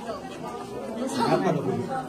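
Several people talking at once: overlapping speech and chatter in a room.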